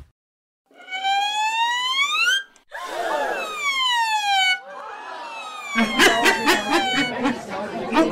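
A siren wailing: one rise, one fall and another rise, each a second or two long. About six seconds in it gives way to crowd chatter with sharp clicks.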